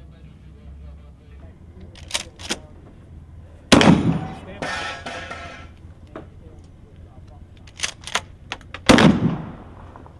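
Two shots from a pump-action shotgun, about five seconds apart, each with a ringing tail. Smaller sharp clicks and clacks come before each shot.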